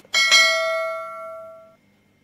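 Notification-bell sound effect from a subscribe-button animation: a bright bell ding that rings and fades for about a second and a half, then cuts off suddenly.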